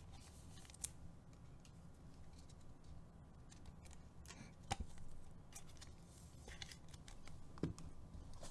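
Faint clicks and slides of Topps Finest baseball cards being flipped through and sorted by hand, the stiff glossy cards ticking against each other. A few sharper ticks come a second or so apart.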